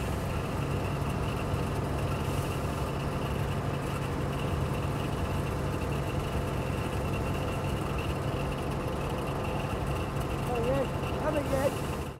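Engine of a vintage open touring car running steadily as the car drives along, a constant low hum.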